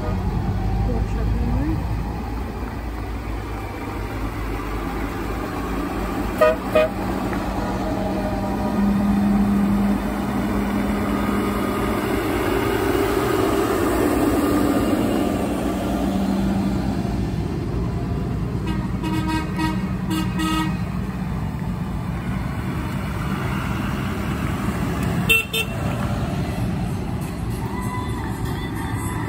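Diesel tractor engines running steadily as a line of tractors drives slowly past, with short horn toots: a couple about six seconds in, a quick run of toots about two-thirds of the way through, and one more near the end.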